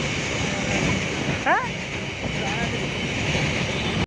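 Container freight train passing close by: the steady running noise of its wagons on the rails. A short rising call, like a voice, cuts across it about a second and a half in.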